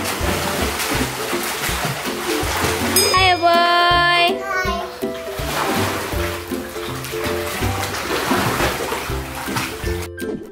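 Water splashing as children kick and swim across a small pool, under background music with a steady bass line. A high child's voice rings out briefly about three seconds in.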